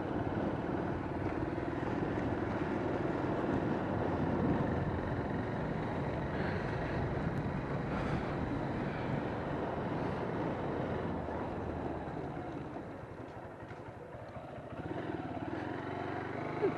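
Motorcycle running while riding along, its engine under road and wind noise. It drops off briefly about thirteen seconds in, then picks up again.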